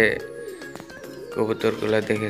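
Domestic fancy pigeons cooing over background music with a singing voice.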